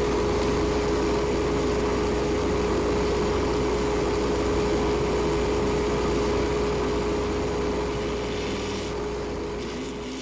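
Wood lathe running steadily with a constant motor whine and low hum, spinning a pen blank while it is sanded with 1000-grit abrasive. The lathe winds down near the end.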